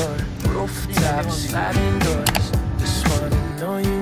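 Background music with a steady beat and a gliding melody line.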